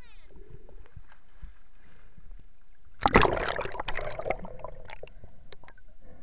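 Lake water lapping and sloshing around a camera held at the surface, then about halfway through a sudden loud splash and rush of water that fades over a second or so.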